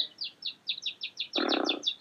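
Small songbird chirping rapidly: an even run of short, high, downward-sliding chirps, about eight a second. A brief breathy hiss about one and a half seconds in.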